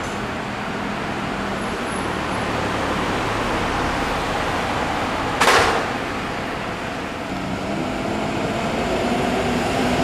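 City bus's diesel engine running at a stop and then pulling away, its note rising as it accelerates in the last few seconds. About halfway through, a short loud pneumatic hiss of air comes from the bus.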